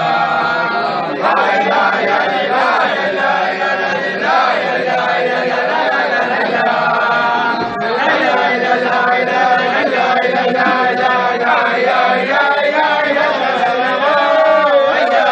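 A group of men singing a Hasidic niggun together, many voices carrying one melody in continuous phrases.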